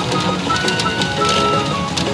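Pachinko machine (PA Ginpara Mugen Carnival) playing its background music in Hibiscus mode, a melody over steady tones, with a running patter of small clicks typical of steel pachinko balls rattling through the machine.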